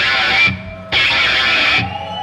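Live rock band playing a stop-start riff led by electric guitar: loud chords cut off by a short break about half a second in, then resuming until another break near the end.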